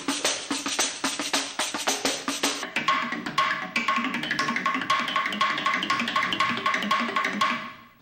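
Hand percussion played in a quick, busy rhythm of many drum strikes. About three seconds in, a short bell-like ping joins, repeating about three times a second. The playing fades out near the end.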